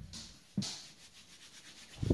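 Hands rubbed together to dust them with flour: a dry rubbing that peaks about half a second in and then fades, with one soft thump at the same moment.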